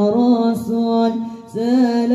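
Boys singing Islamic sholawat (devotional praise of the Prophet) into microphones over a PA system, with long held, ornamented notes. The singing breaks off briefly about three-quarters of the way in, then comes back in.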